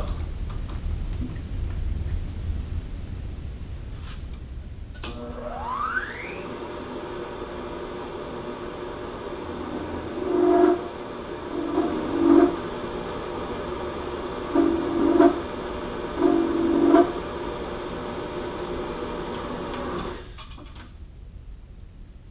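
Vertical milling machine spindle clicking on about five seconds in, its whine rising as it spins up, then running steadily; four times it grows louder as the end mill cuts a flat-bottomed counterbore for a cap-head screw in aluminum. It clicks off about two seconds before the end and runs down.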